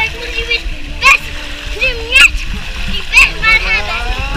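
A young girl's short high-pitched cries, three of them about a second apart, over water rushing and splashing down a water slide.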